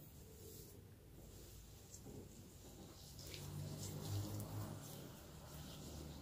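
Faint rustling and scratching of hands working a thick cream treatment through damp hair, with a faint low hum in the middle.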